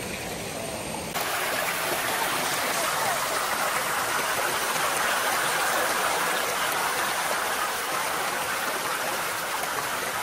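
Shallow rocky stream rushing over a small cascade of stones in a steady rush, which cuts in abruptly about a second in.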